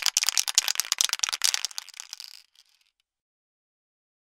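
Graffiti spray-paint can being shaken fast, its metal mixing ball rattling inside in a dense run of clicks that stops about two and a half seconds in.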